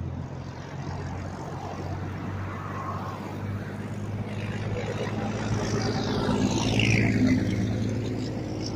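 Road traffic passing: a heavy dump truck's diesel engine drawing nearer and going by close, loudest about seven seconds in, with a whine that drops in pitch as it passes.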